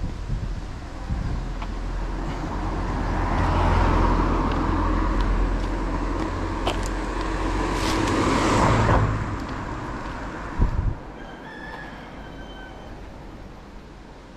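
A car passes on the road, its engine and tyre noise growing to a peak about nine seconds in and then fading, with a short sharp knock just after. A rooster crows faintly near the end.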